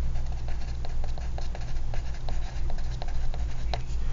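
Pencil writing on lined paper: quick, irregular scratches and taps of the pencil tip as words and numbers are written out, over a steady low hum.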